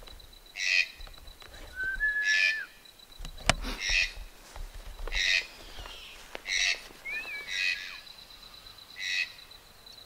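Yellow-headed caracara (carrapateiro) calling: a short harsh screech repeated about seven times, every second and a half or so. A thinner whistled note from another bird comes twice, and there is one sharp click about three and a half seconds in.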